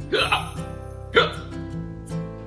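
Background music playing under two short, sharp gasps from a man whose mouth is burning from extreme hot sauce, one just after the start and a louder one about a second in.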